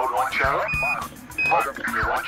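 Archival Apollo Mission Control radio voice traffic. Two short, steady high beeps cut in about three-quarters of a second and one and a half seconds in; these are Quindar tones, which key the transmitter on and off.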